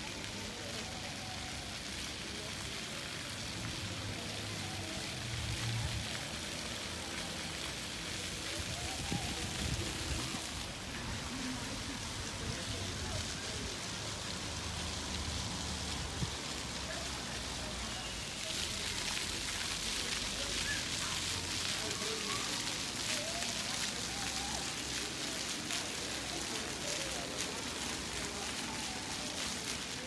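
City street ambience while walking: a steady hiss over a low traffic rumble, with faint voices of passers-by. The hiss grows brighter and louder about two-thirds of the way through.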